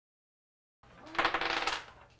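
Silence for the first second. Then a short clatter of small hard objects being handled on a table.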